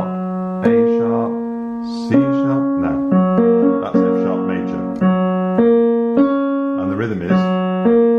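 Digital piano played slowly one note at a time: left-hand broken chords, each note held and ringing on under the next.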